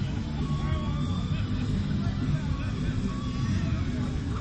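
Outdoor city ambience: a steady low rumble of road traffic with faint distant voices.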